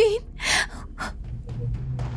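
A woman gasping for breath in distress, two short sharp gasps within the first second. Low, sombre background music begins to sound under it about halfway through.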